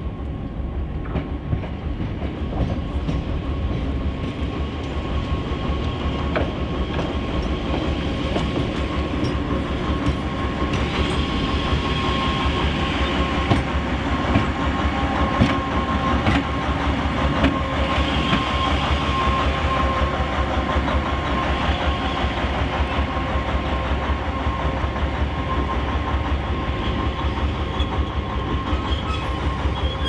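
Red diesel shunting locomotive running light along yard tracks: a steady engine rumble with a thin steady whine, and wheels clicking over rail joints, getting louder toward the middle as it passes close by.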